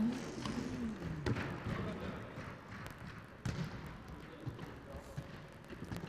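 A few scattered thumps of a futsal ball being kicked and bouncing on a sports-hall floor, with a drawn-out shout from a player near the start.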